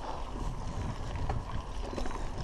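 Raleigh MXR DS 29er mountain bike rolling along a dirt track: a steady low rumble of tyres on the ground, with a few faint rattling clicks.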